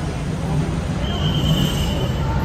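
Steady rumble of heavy city traffic, with a thin, high, steady squeal starting about halfway through and lasting about a second.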